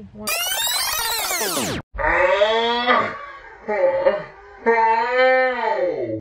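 A long high squeal falling steadily in pitch, cut off suddenly just under two seconds in. Then a woman groans and moans in pain in several drawn-out stretches as a nasopharyngeal swab is pushed up her nose.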